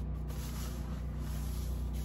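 Steady low hum with an even hiss over it, and no distinct sound events.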